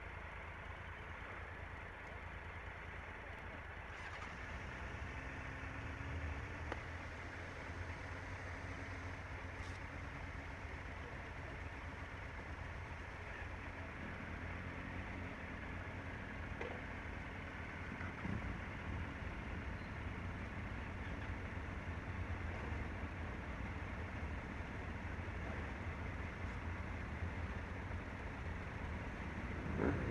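Motorcycle engines idling: a steady low rumble, with fainter engine notes that rise and fall now and then as other bikes sit running.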